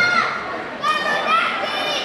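Audience chatter in a large hall, with several high-pitched children's voices calling out over one another.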